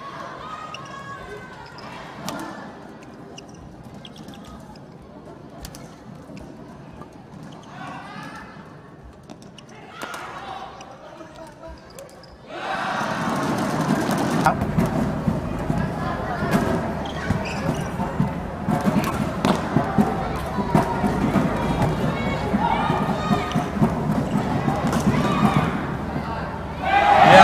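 Indoor badminton arena sound: a low murmur of the hall for about twelve seconds. Then crowd noise swells suddenly and stays loud, with many short sharp knocks and squeaks from play on the court running through it.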